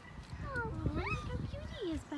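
A goat bleating.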